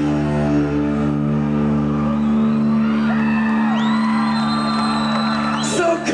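A live rock band holds a ringing chord on electric guitar and bass, while audience members whoop and shout over it. Near the end a drum crash brings the band back in.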